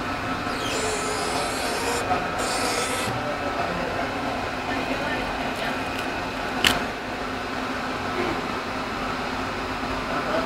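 Golf ball printing machine running, a steady mechanical hum with two short hisses early on and one sharp click about two-thirds of the way through.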